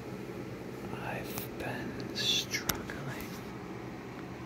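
A person whispering very slowly into the microphone, each syllable drawn out, with a long hissed 's' sound and a single sharp click a little after two seconds in, over a faint steady low hum.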